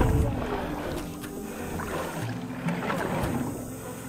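Wind and sea noise buffeting a body-mounted action camera on a boat, a rough, rumbling rush, with the steady held notes of background music underneath.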